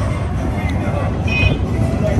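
Music from the ride's loudspeakers over a steady low rumble as the ride car moves, with scattered voices.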